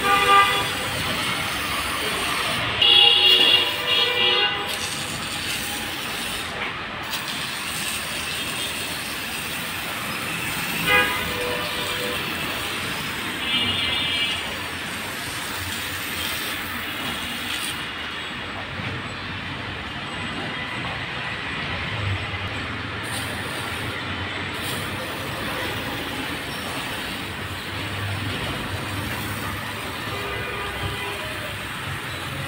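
Hand-pumped garden pressure sprayer spraying foam and water onto a car, a steady hiss. Short squealing tones break in near the start, at about three to four seconds, and twice more between eleven and fourteen seconds.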